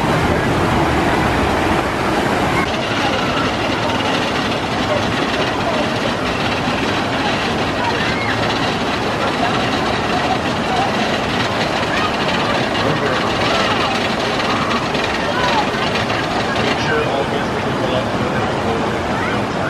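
Whitewater rushing steadily down the concrete channel of a river-rapids ride.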